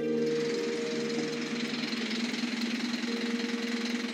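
The end of a music sting gives way almost at once to a city bus's diesel engine idling, with a steady low hum over a wash of noise in the enclosed bus terminal.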